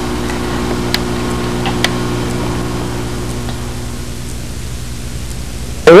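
Steady electrical hum over an even hiss, the hum fading out about halfway through, with two faint clicks in the first two seconds.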